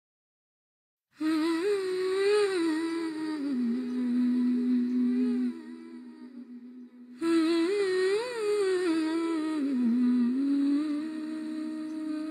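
A solo voice humming a slow, ornamented melody, starting about a second in. It comes in two long, wavering phrases; the first settles onto a low held note before the second begins, and the second ends on a steady held note.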